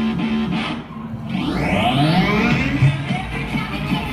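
Loud distorted music with electric guitar and effects. It thins out briefly about a second in, then comes back with a sweep rising in pitch and swooping glides.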